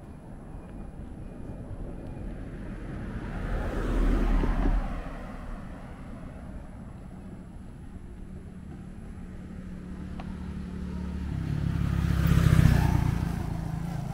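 Road traffic: two motor vehicles pass close by, each rising and fading away. The first goes by about four seconds in; the second, louder one goes by near the end with a steady engine hum.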